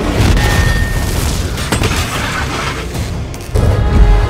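Film action soundtrack: deep explosion booms and crashes over score music, with a sharp report at the start and another loud hit about three and a half seconds in.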